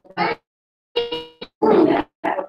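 Garbled, choppy voice sounds over a poor video-call connection, cutting in and out in short bursts with dead gaps between them and growing loud and noisy near the end.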